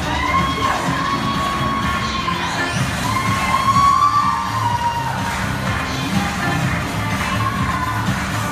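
Audience cheering and screaming, with two long high-pitched shrieks in the first half, over background music.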